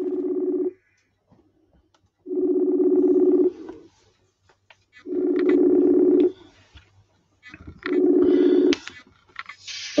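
Outgoing call ringing tone from a calling app, waiting for the other end to answer: a steady low tone sounding four times, each ring about a second long and roughly two and a half seconds apart.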